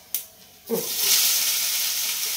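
Shredded cabbage tipped from a steel plate into a hot kadai, starting a loud, steady sizzle about two-thirds of a second in. A short tap of the spatula on the plate comes just before.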